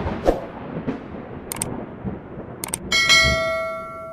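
Outro sound effects: a few soft whooshes, then two quick double clicks, then a bell chime about three seconds in that rings on and slowly fades, as in a subscribe-and-notification-bell animation.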